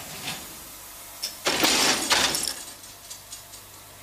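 A thin plastic garment cover being pulled down over a freshly cleaned dress: one loud rustling swish of plastic about a second and a half in, lasting under a second, with lighter handling rustles before it.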